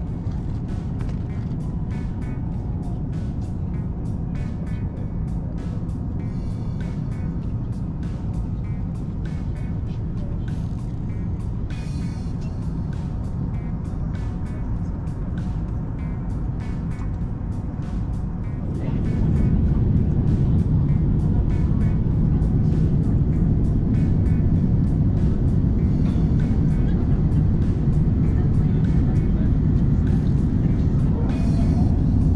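Jet airliner cabin noise: a steady low rumble from the engines and airflow, with background music over it. About two-thirds of the way through, the rumble suddenly becomes louder and deeper.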